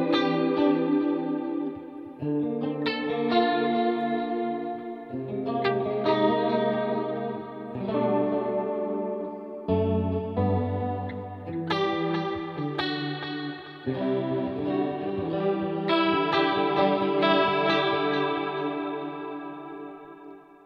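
Clean electric guitar played through a Line 6 Helix with chorus, reverb and delay on: strummed chords left to ring, a new chord every one to three seconds, dying away near the end.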